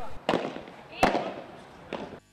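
Padel ball being hit during a rally: two sharp pops a little under a second apart, and a fainter one near the end.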